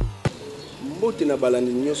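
An electronic music jingle ends with one last bass beat, then a man's voice begins with a drawn-out, bending vocal sound about a second in.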